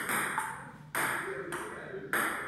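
Table tennis rally: a plastic ball knocking off paddles and the table in sharp, short pocks spaced about half a second to a second apart, each ringing briefly in the room.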